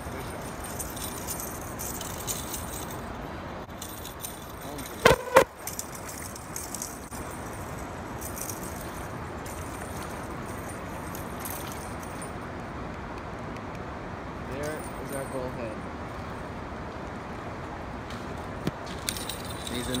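Fishing rod and spinning reel being worked as a fish is brought in, over a steady hiss, with two sharp knocks about five seconds in.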